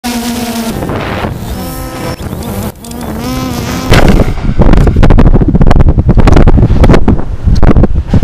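A drone's electric motors whine, their pitch rising and falling. About four seconds in, loud wind buffeting on the microphone of a falling, tumbling GoPro camera takes over, with repeated jolts.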